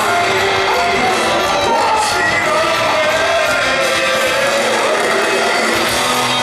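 Rock band playing live: electric guitars, bass and drums with a singer, heard from the audience floor.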